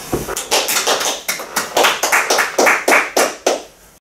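A small audience clapping at the end of a talk: distinct hand claps at about six a second, starting about half a second in and dying away just before the end.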